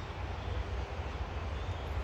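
Steady outdoor background noise with a low rumble underneath and no distinct events.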